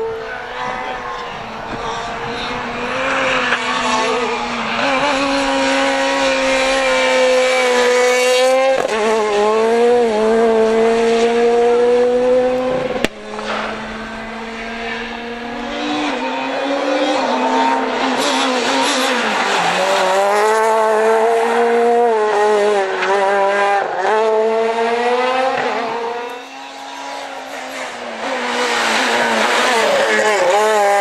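Ford Fiesta S2000 rally car's naturally aspirated 2.0-litre four-cylinder engine at high revs on a rally stage, pulling through the gears: the pitch holds high, drops at each upshift and climbs again. It is heard over several separate passes, with abrupt cuts between them.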